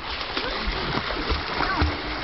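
Water splashing as a crowd of children swim and thrash around a boat's hull, with short scattered calls from children's voices over the splashing.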